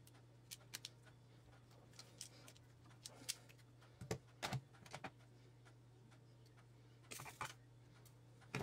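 Hand crimping pliers pressing an insulated ferrule onto the end of a thin wire, heard as a scattering of faint clicks, with a few more small clicks from handling the wire afterwards. A steady low hum runs underneath.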